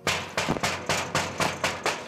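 Rapid, repeated banging on a compound gate, about six to seven blows a second.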